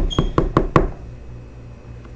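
Five quick knocks in under a second, evenly spaced, each one sharp and short.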